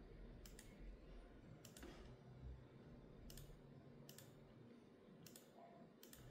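Near silence broken by faint clicking at a computer: five quick double clicks spaced about a second apart.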